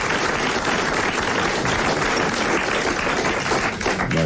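Studio audience applauding a correct answer: a dense, steady clatter of many hands clapping that gives way to talk at the end.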